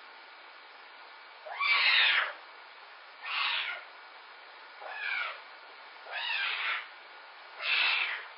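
A young pet calling out from its crate: five separate wavering, high-pitched cries about a second and a half apart, each half a second to a second long, the first the loudest.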